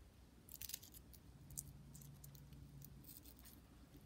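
Faint, scratchy crackles of fingers working among a zebra haworthia's stiff leaves and loose potting soil, in a few short clusters over near-silent room tone.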